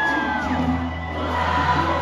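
Live band playing the opening of a song, with trombones, bass guitar and keyboards, while the audience cheers. A high cry from the crowd falls away in the first half second.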